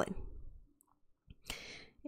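A short pause in a woman's speech: her last word fades out, then a faint click about a second and a quarter in, followed by a short intake of breath just before she speaks again.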